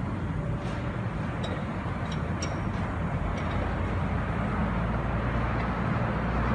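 Peterbilt 357 dump truck's diesel engine idling steadily with a low hum, with a few light ticks in the first half.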